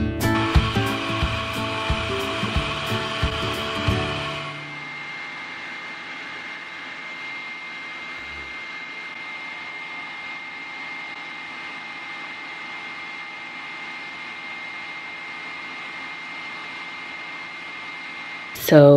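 Acoustic guitar background music for about the first four seconds, then a hooded hair dryer running. It gives a steady whir with a constant high-pitched tone.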